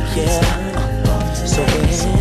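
R&B music from a steppers DJ mix, with a steady beat, deep sustained bass and a gliding melody line.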